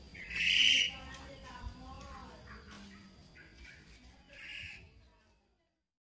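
Baby macaque giving two short, high-pitched squeals. The first comes about half a second in and is the louder; the second comes near the end.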